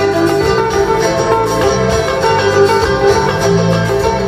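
Live band music: a plucked string instrument playing a melody of quick notes over a drum kit and a bass line.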